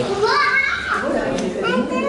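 High-pitched children's voices calling and chattering, one voice rising and falling in the first second and another near the end.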